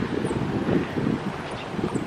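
Wind blowing across the camera microphone: an uneven low rumble that swells and dips.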